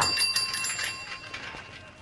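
A small metal bell ringing: a quick trill of strikes for about the first second, then fading away.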